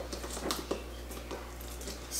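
Raw pork chunks being pushed by hand through a canning funnel into a glass pint jar: a few soft squishes and light knocks over a faint low hum.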